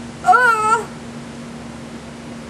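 A woman's brief wordless vocal sound, a single pitched sound that rises and falls over about half a second near the start.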